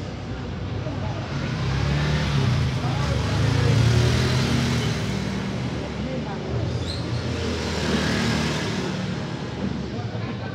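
A motor vehicle engine running, its low sound swelling about three to four seconds in and again near eight seconds, over a steady hiss.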